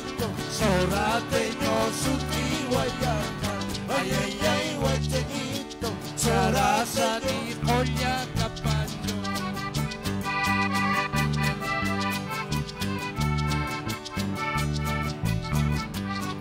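Live Andean huayño band music: an electric bass keeps a steady, regular beat under guitars, with a wavering lead melody in the first half that gives way to steadier, higher held notes about halfway through.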